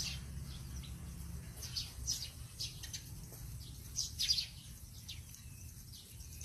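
Small birds chirping: a scatter of short, high calls, loudest about four seconds in, over a faint steady low rumble.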